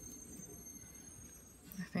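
Quiet background hum with a faint high steady whine, under light rustling of dry potting soil being crumbled off a succulent's roots by hand.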